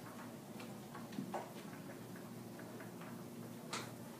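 Quiet classroom room tone with faint, irregular light clicks and taps as students write at their desks; a sharper click near the end.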